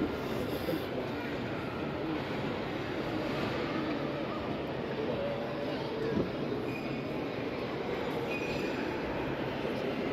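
Steady ambience of a large, echoing exhibition hall: a murmur of visitors' voices and a hum, with a couple of faint brief tones in the second half.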